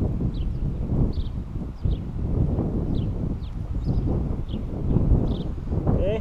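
Strong gusty wind buffeting the microphone: a loud, uneven low rumble, with faint short high chirps scattered through.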